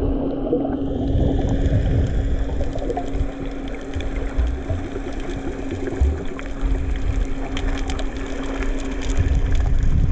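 Underwater sound picked up by a snorkeler's camera: muffled water rushing and sloshing, with a steady low hum throughout and scattered faint clicks.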